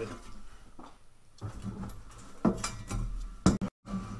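Cobb catted J-pipe handled on a workbench: a few light metallic clinks and knocks, the sharpest about three and a half seconds in. The sound cuts out briefly just before the end.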